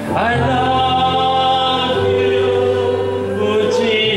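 Worship song: electronic keyboard holding sustained chords under group singing, with the chord changing about two seconds in.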